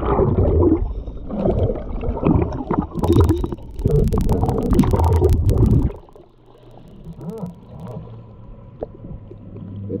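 Muffled underwater rumbling and gurgling picked up by a camera submerged in a creek, with a run of sharp clicks in the middle as the bottom is disturbed. About six seconds in it cuts off suddenly to a much quieter low hum.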